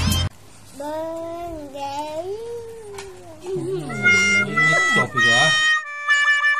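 A toddler's high voice, drawn out and sliding up and down for a couple of seconds, then more vocalising. From about four seconds in, bright steady chime-like tones of music join in.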